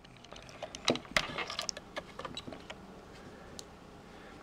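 A few light plastic clicks and handling noises as a small wiring connector is unplugged from a camera gimbal and the gimbal is moved by hand; the clicks come in the first half, and the rest is quieter handling.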